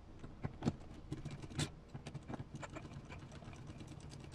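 Hex driver working a small screw on an RC crawler's front steering knuckle, with faint scattered clicks and ticks of the tool and small metal parts being handled, a few sharper ticks in the first second and a half.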